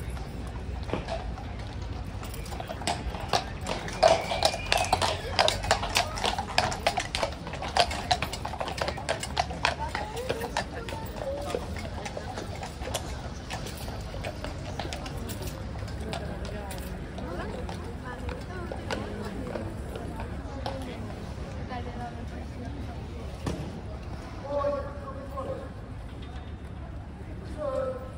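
A shod cavalry horse's hooves clip-clopping on stone paving as it walks, the strikes thickest and loudest through the first half, over the chatter of an onlooking crowd.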